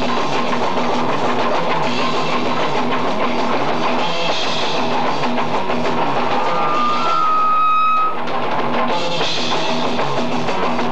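Live punk rock band playing loudly: drum kit, electric guitars and bass. About seven seconds in, one high note is held while the drums and low end drop out for about a second, then the full band comes back in.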